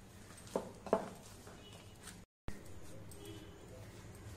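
A hand kneading and squishing mashed boiled potatoes with butter in a glass bowl, giving a soft, low, wet handling sound. Two sharp knocks come about half a second and a second in, and the sound drops out completely for a moment just after two seconds.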